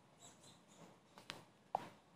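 A few faint, short clicks against quiet room tone, the sharpest near the end.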